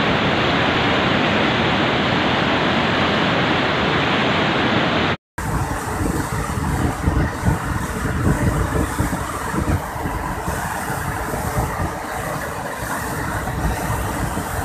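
Steady rushing roar of a fast, muddy mountain river. The sound cuts out briefly about five seconds in, then resumes rougher, with uneven low rumbles.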